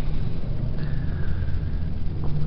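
Hydraulic guillotine's electric pump motor running with a steady low hum. A faint high whine joins about a second in.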